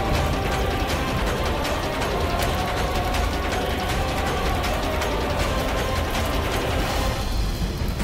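Fire crackling as a dense, fast run of clicks, over background music with faint sustained tones.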